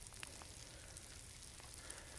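Faint outdoor ambience: a low, even hiss with a few scattered faint ticks.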